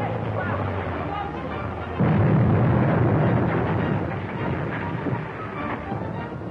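Film sound effect of a rockslide: a sudden loud crash about two seconds in, then a rumble of tumbling rocks that fades over the following few seconds.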